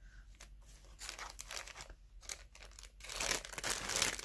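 Clear plastic bag crinkling as it is handled: a few faint crackles at first, growing louder and denser near the end.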